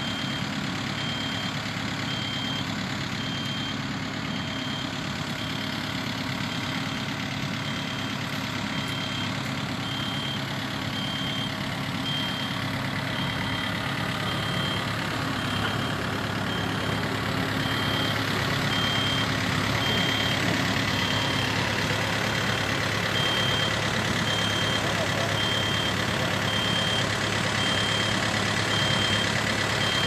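A tracked core drilling rig's engine running with a steady drone, while a high electronic warning beeper sounds a little over once a second. The drone grows louder in the second half.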